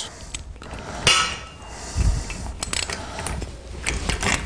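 Metal clinks and tool scrapes as a nylock nut is tightened onto a steel spade bolt on a clay-target trap. There is a short rasping scrape about a second in and a dull thump about two seconds in.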